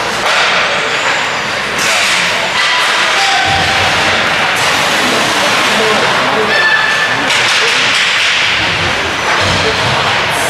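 Ice hockey play at rink level: sticks and puck knocking sharply about four times, over a steady din of skates on ice and shouting voices.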